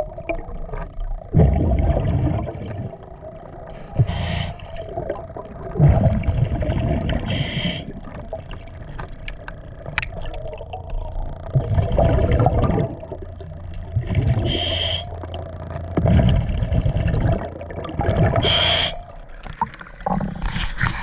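A diver breathing through a regulator underwater: a short hiss of inhalation every few seconds, with a low burbling rush of exhaled bubbles between them.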